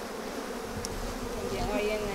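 A honeybee colony buzzing steadily around an open hive.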